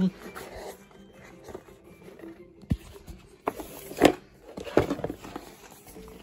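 Handling noise of a box being put away: a few knocks and bumps, the loudest a sharp knock about four seconds in, over faint background music.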